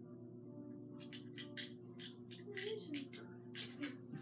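Irregular rattling and clattering of small hard objects being handled, about ten sharp clacks starting about a second in, over a steady low hum.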